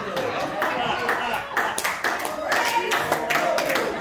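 Congregation laughing, with irregular hand claps about three a second.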